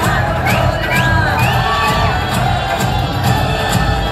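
Recorded dance song playing loudly over a PA system with a steady beat, under an audience cheering and shouting.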